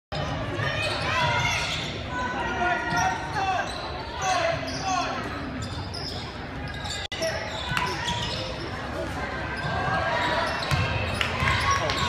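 A basketball bouncing on a hardwood gym floor amid spectators' chatter and calls, echoing in a large gymnasium. There is a momentary drop-out about seven seconds in.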